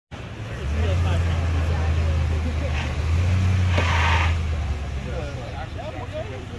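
Toyota Tundra pickup's V8 engine pulling under load as the truck climbs a steel flex ramp: a steady low drone that starts about a second in and eases off near the end, with a short hiss about four seconds in. Faint voices of onlookers behind it.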